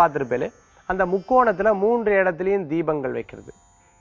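A man's voice speaking, in two stretches with a brief pause about half a second in and a longer pause near the end.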